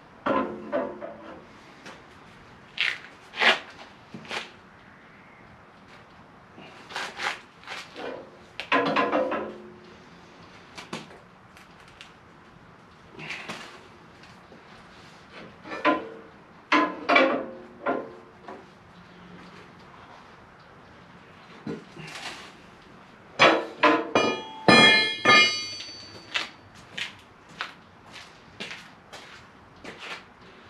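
Hammer blows on a sheet of aluminum diamond plate, struck by hand to bend it over a steel form. The strikes come in irregular groups, some with a short metallic ring, and a quick run of ringing blows comes near the end.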